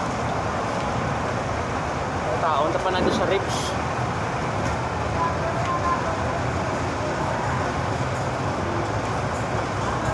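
Steady city street noise: road traffic going by with indistinct voices of passers-by, and a brief louder pitched sound about three seconds in.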